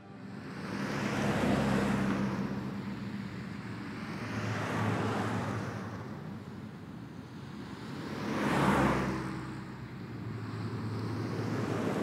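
City street traffic: cars passing one after another, each swelling and fading away, the loudest about nine seconds in, over a low steady hum.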